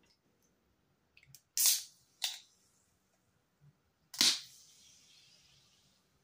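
A carbonated G Fuel energy drink can being opened by its ring-pull. Sharp clicks and two short hisses come first, then about four seconds in the loudest crack, as the can vents with a burst of hissing gas that fades into fizz.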